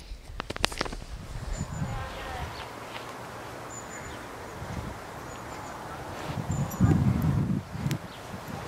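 Outdoor garden background with brief high bird chirps now and then. A few clicks come in the first second, and there is a louder burst of low rumbling noise near the end.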